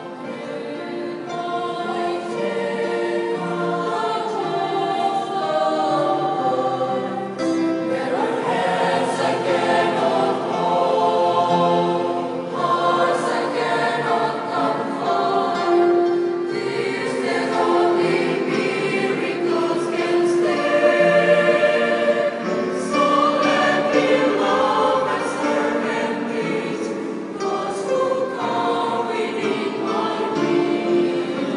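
A choir singing in harmony, several voice parts holding and moving between sustained notes.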